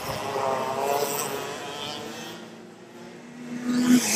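Two-stroke racing kart engines passing at speed: one swells and fades over the first couple of seconds, and another comes on fast and loud near the end.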